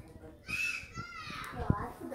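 A child's voice making a high, wordless sound that bends down in pitch, then a single sharp tap near the end.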